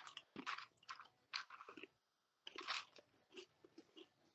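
Faint crunching as Oreo cookies are bitten into and chewed, a handful of short, irregular crunches.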